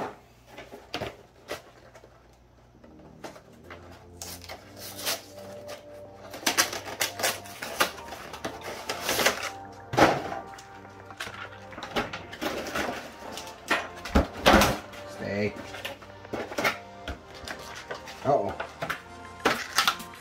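Cardboard collector boxes being opened and their packaging handled: a run of short clicks, scrapes and crinkles. Background music comes in about three seconds in.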